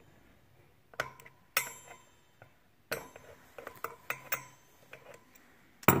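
A wrench clinking against the steel axle nut of a Bafang hub motor as the nut is loosened. A few sharp metallic clinks, the first ringing briefly, are followed by a run of lighter, irregular ticks.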